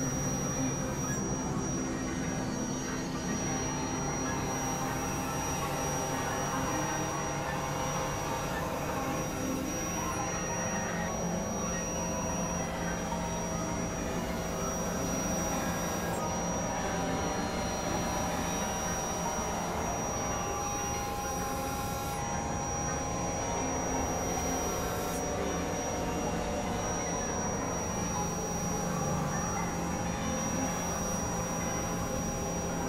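Experimental electronic synthesizer drone music: several sustained tones layered over a dense, noisy bed, with a thin high whistle-like tone held steady throughout. The top of the noise cuts in and out every few seconds.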